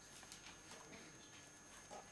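Near silence, with faint scratches and light taps of a felt-tip marker writing on paper, a few short strokes scattered through the moment.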